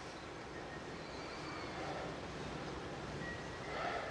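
Faint, steady background ambience with no distinct events.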